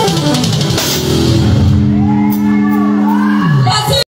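Live church band playing: drum kit with cymbals and keyboard. The drumming thins out about halfway through while a low sustained keyboard chord holds, then slides down in pitch near the end.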